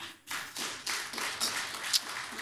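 Audience applause: many hands clapping together, starting suddenly and continuing steadily.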